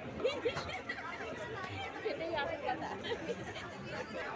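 Chatter of several people talking at once close by, overlapping voices with no one voice standing out.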